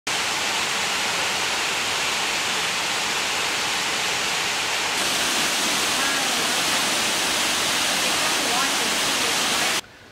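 A 73-foot limestone waterfall running at full flow after heavy rain: a loud, dense, steady rush of falling water. It shifts slightly about halfway through and cuts off suddenly just before the end.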